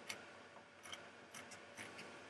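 A few faint, short clicks from a computer mouse as the web page is scrolled down, about four spread over two seconds, over quiet room noise.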